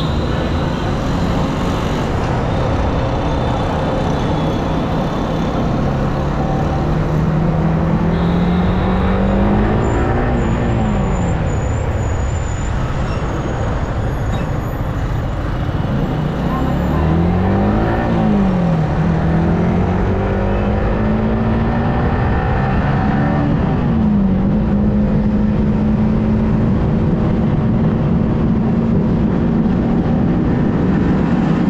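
Yamaha R15M's single-cylinder engine pulling up through the gears. The pitch climbs and drops sharply at three upshifts, then holds a steady tone at cruising speed, under heavy wind rush on the microphone.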